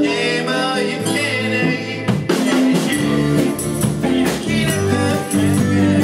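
Live rock-pop band playing: strummed guitars, keyboard and drum kit. About two seconds in a loud drum hit lands and the bass and drums come in more fully with a steady beat.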